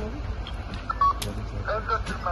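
A brief electronic beep about a second in, with voices talking near the end.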